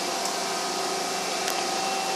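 Steady running hum of a CNC vertical machining center, with a few faint constant whine tones over an even noise.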